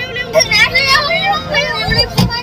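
Excited voices of a woman and children calling out over one another, with a deep thump near the end.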